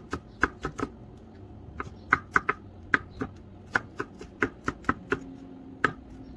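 A chef's knife mincing garlic on a wooden cutting board: sharp knocks of the blade striking the board, several a second in uneven runs with short pauses.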